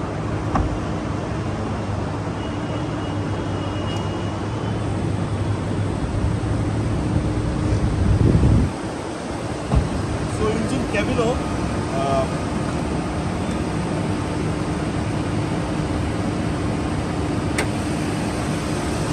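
A Toyota Fielder's four-cylinder 16-valve DOHC engine idling steadily, a low even hum. There is a brief louder low rumble about eight seconds in and a sharp click near the end.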